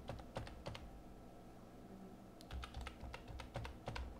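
Faint computer-keyboard typing: a quick run of keystrokes at the start, a short pause, then another run from about halfway on, as digits are keyed in.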